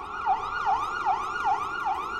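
Emergency vehicle siren sounding in a fast yelp, its pitch sweeping down and back up about two and a half times a second.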